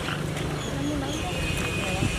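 Faint, indistinct voices of people talking over a steady outdoor background hiss. A thin, steady high tone sets in about one and a half seconds in.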